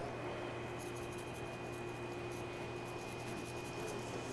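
Quiet, steady kitchen background noise with a faint even hum.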